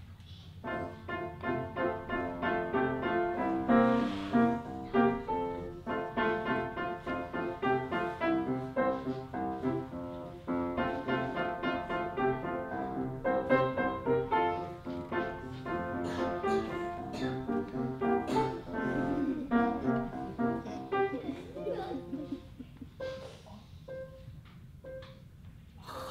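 Piano music with many quick notes, starting about half a second in and fading out about two seconds before the end, over a steady low hum.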